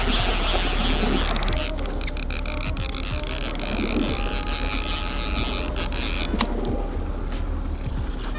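Fishing reel being cranked to bring in a fish, with a run of quick clicks and hiss in the middle, over the low steady hum of the boat's motor and wind and water noise.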